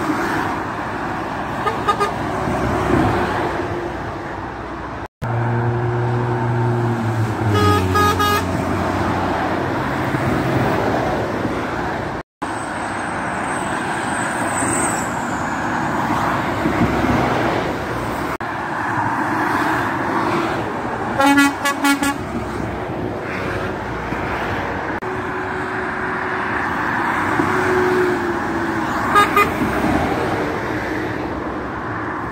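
Steady motorway traffic noise from cars and lorries passing below. A lorry's air horn sounds a long, loud call from about five to eleven seconds in, stepping down in pitch. Later come shorter rattling bursts.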